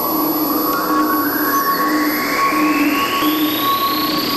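Electronic music: a whoosh of synthesized noise rises steadily in pitch over sustained synth tones, with a low tone pulsing evenly underneath.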